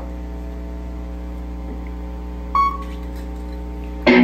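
Steady electrical mains hum and buzz from the stage amplification, with one short, high beep-like tone about two and a half seconds in.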